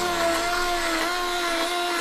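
Immersion hand blender running in a pot of thick sauce, puréeing it: a steady motor whine whose pitch wavers slightly as the blade works through the gravy.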